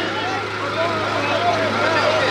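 A large crowd's voices overlap, many people calling out at once, over a steady low hum.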